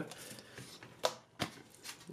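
A stack of Pokémon trading cards being handled in the hands: a soft rustle of card stock, with three light clicks, the first about a second in.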